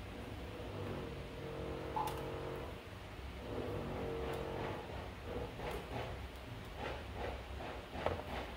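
A spoon scraping and tapping bread pudding mix out of a plastic mixing bowl into a foil pan, a run of short scrapes in the second half. A steady hum runs through the first half, with a single knock about two seconds in.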